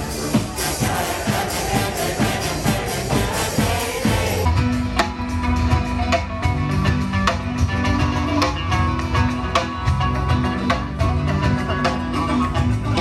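Live brass band music played to a crowd. About four seconds in it cuts abruptly to a different live band with guitars and drums, with steady low notes under the plucked strings.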